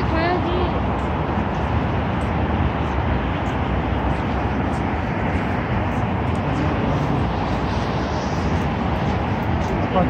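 Steady road-traffic noise from the multi-lane road below, with a brief voice right at the start and passers-by talking.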